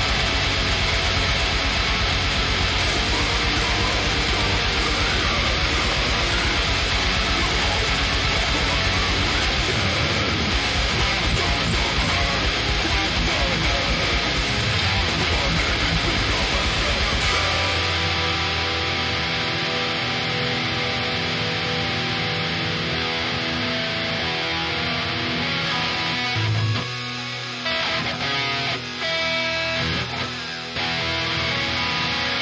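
Distorted electric guitar playing fast black metal riffs over a full band track with rapid drumming. A little past halfway the fast drumming stops and the music thins to held chords, with brief breaks near the end.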